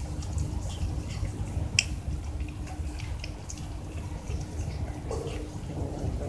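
Cats eating, with wet mouth clicks and smacks from chewing coming irregularly several times a second, the sharpest about two seconds in, over a steady low background rumble.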